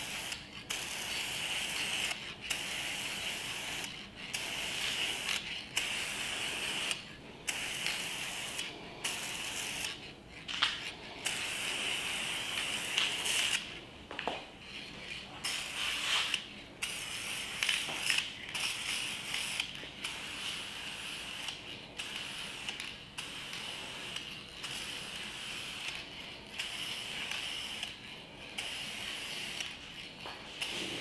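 Aerosol spray paint can hissing in repeated bursts of a second or two with short breaks between, laying a light second coat of paint onto a plastic engine cover.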